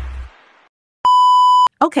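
Intro music fading out, then after a short silence a single loud electronic beep lasting just over half a second, one steady tone that starts and stops abruptly.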